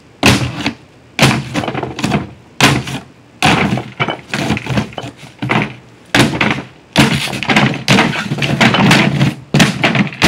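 A long wooden stick struck down hard again and again on the top of a thin wooden box, about a dozen blows at roughly one a second, some sounding ragged and drawn-out. The thin top panels crack and splinter as holes are broken through them.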